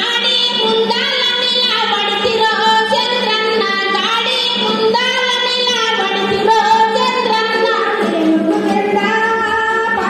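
A woman singing a song in Telugu into a handheld microphone, her voice carried over a PA system, holding and bending long notes without a break.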